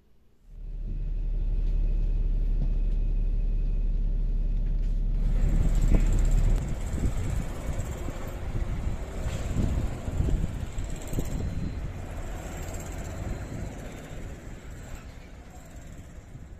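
A bus engine running: a steady low idling hum that starts suddenly, then a rougher, uneven rumble from about six seconds in that slowly fades out.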